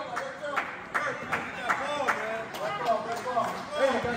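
Indistinct overlapping voices of players and spectators in a gymnasium, with scattered sharp claps.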